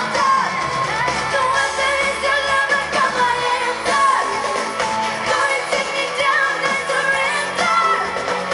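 A female pop singer singing live over a full band, heard through a large outdoor concert PA from within the audience.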